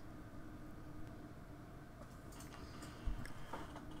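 Quiet room tone: a faint steady low hum, with a soft low thump about three seconds in.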